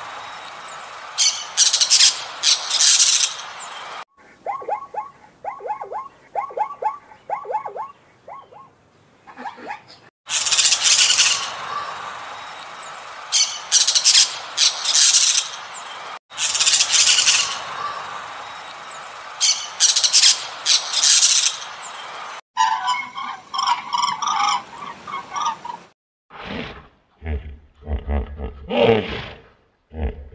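Parrots calling in a series of short clips: loud, harsh screeching calls, with one stretch of quicker, evenly repeated notes in between. Near the end, deeper animal calls with a low rumble take over.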